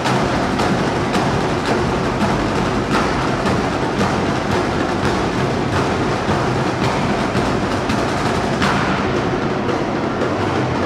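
Drum corps drum line, with bass drums among them, playing a fast, dense, continuous cadence of sharp stick strokes.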